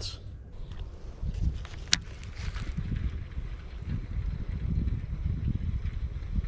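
Wind buffeting the camera microphone, heard as a steady low rumble, with a single sharp click about two seconds in.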